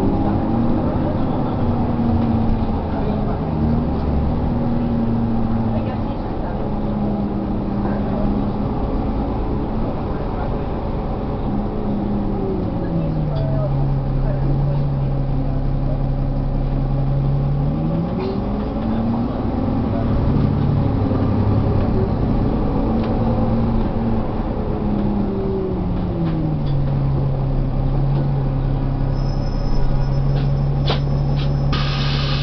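Interior sound of a NovaBus LFS articulated bus driving, its Cummins ISL9 diesel engine and ZF automatic transmission running under way. The engine note drops a little under halfway through, rises again a few seconds later, and drops once more near the end as the bus slows and pulls away in traffic.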